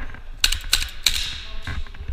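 Airsoft rifle firing a few single shots: sharp mechanical clicks and snaps at uneven spacing, some in quick pairs.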